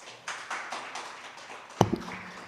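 Audience applauding, with one sharp knock near the end.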